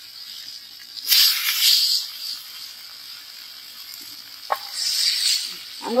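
Marinated tilapia (jilebi fish) deep-frying in a wide pan of hot oil: a steady sizzle that swells loudly twice, about a second in and again near the end, with a short click midway.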